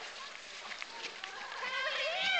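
Players' shouts and calls across an open ice rink, with a high yell starting near the end, and a few light knocks from the play on the ice.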